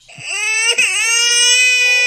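A baby crying: one long, high wail that dips briefly in pitch a little under a second in, then holds steady.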